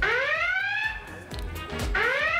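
Game-show alarm sound effect over music: a siren-like tone that swoops up and then slides down over about a second, starting again near the end. It is the show's cue for a steal ('robo').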